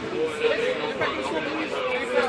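Several people talking at once, overlapping and indistinct.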